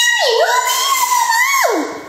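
A long, high-pitched meow, wavering and then sliding down steeply near the end.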